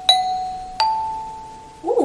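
Two metal resonator bells struck with a mallet: a strike on the lower bar (mi), then a strike on the higher bar (sol) under a second later, each ringing out and fading. The two notes rise by a small step, the mi–sol pattern for children to sing back.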